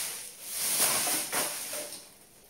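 Hands rummaging, a dry rustling that comes in two long swells and dies away just before the end.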